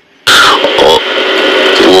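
Speech, after a brief pause: a voice recording played back, with a steady hiss behind the voice.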